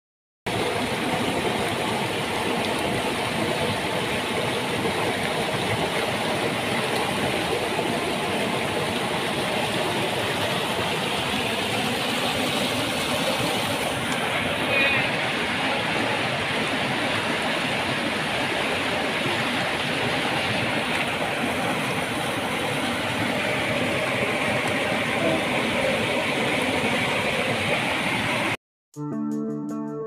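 Water rushing steadily over rocks at a small waterfall and river rapids. It is a continuous, even roar that begins about half a second in and shifts slightly in colour partway through.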